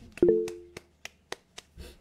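One person clapping, about seven claps at an even pace of roughly three a second. A short pitched tone sounds over the first few claps.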